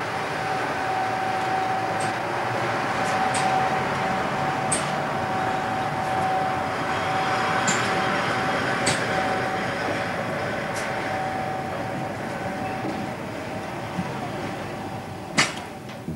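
Electric passenger train at a station, hauled by a ChS2 locomotive: a steady rumble and rush of noise with a steady hum tone and a few scattered clicks, easing off a little in the second half.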